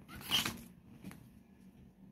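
The fabric canopy of an open umbrella rustling briefly in the first half-second as it is swung around, followed by a faint click about a second in.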